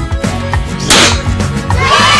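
Cartoon party-popper sound effect: one sharp whooshing pop about a second in, over a children's music track with a steady beat. Children's cheering starts just before the end.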